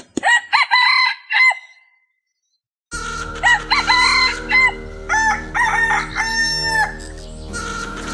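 Roosters crowing: one crow right at the start, then a pause, then a longer stretch of crowing over a steady background hum.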